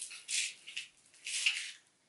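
A cucumber being turned by hand through a cheap handheld plastic spiral cutter, the blade shaving it in a few short, wet scraping strokes. It is cutting poorly, leaving the cucumber mushy and unevenly cut.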